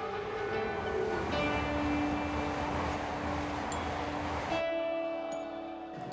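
A Shinkansen bullet train running on an elevated viaduct: a steady rushing noise with a low rumble that cuts off suddenly about four and a half seconds in. Held notes of background music sound under it and continue afterwards.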